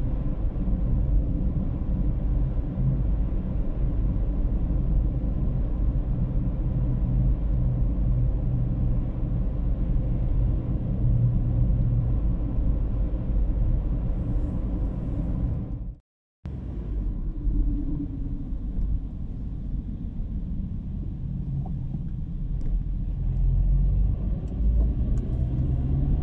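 Steady low rumble of a car's engine and tyres on the road, heard from inside the moving car. The sound cuts out completely for a split second about sixteen seconds in, then carries on.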